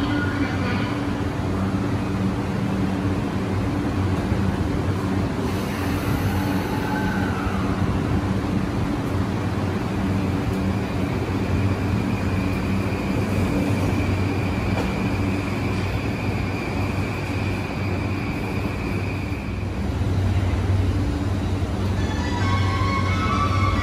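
JR East E235-1000 series electric train pulling out of an underground platform: a steady low electrical hum, joined about halfway by a high steady motor whine that fades out a couple of seconds before the end.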